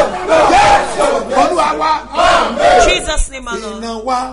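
A man's voice shouting a fervent exhortation, which settles into held sung notes near the end.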